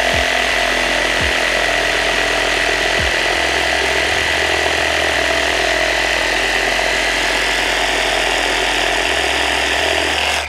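Cordless Ridgid reciprocating saw with a Milwaukee wood-cutting blade sawing through a 4x4 block, running at a steady high buzz with a constant whine throughout. It is a slow cut, the longest of the saws tried.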